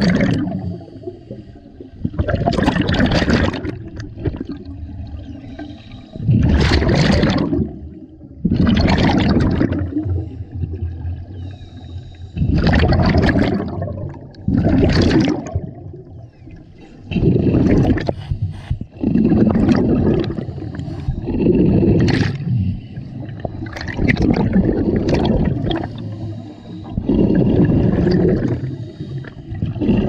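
Scuba regulators heard underwater: a loud bubbling rush of exhaled air about every two seconds, with a quieter hiss of breathing between the bursts.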